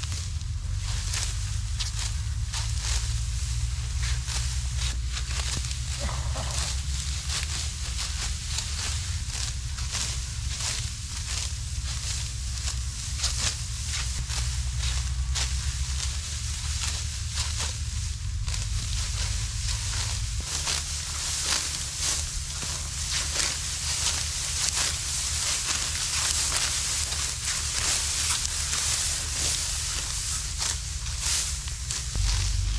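Dry wheat stalks being cut by hand with sickles: a rapid, irregular run of crisp crunches and rustles, over a steady low rumble that drops back about two-thirds of the way through.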